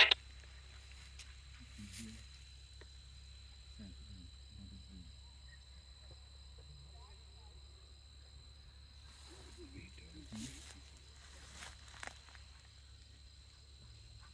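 Quiet open-field ambience: a steady high-pitched insect drone, faint distant voices now and then, and a few brief rustles, with a sharp knock right at the start.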